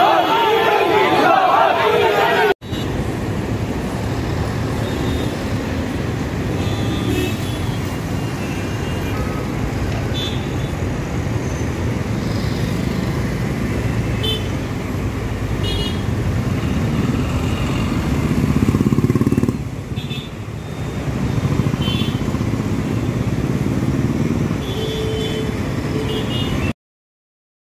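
A crowd of men shouting and talking for the first two or three seconds, then, after a sudden cut, steady road traffic noise with passing engines and brief horn toots now and then.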